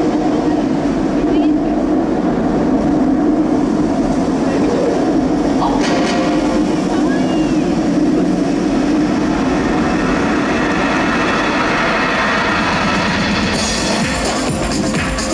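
A loud, steady rumbling drone played over the hall's sound system, with a brighter sound entering near the end as an electronic dance track begins.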